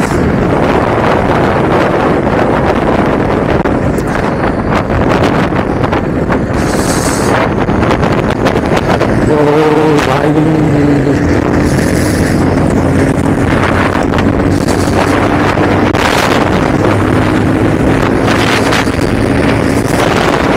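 Heavy wind noise on the microphone of a Bajaj Pulsar 220F ridden at speed, with the motorcycle's single-cylinder engine running underneath. About halfway in, a bus passes close alongside, and after that a steady engine hum holds.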